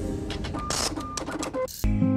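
Animated-intro sound effects: a rapid, irregular run of mechanical clicks and ticks with short hissing swishes over held musical notes. Near the end, plucked-string music begins.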